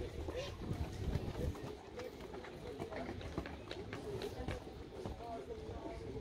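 Distant, indistinct voices over a low gusty rumble of wind on the microphone, with scattered faint clicks.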